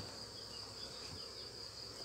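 Faint, steady, high-pitched insect trill that carries on unbroken, with no other sound standing out.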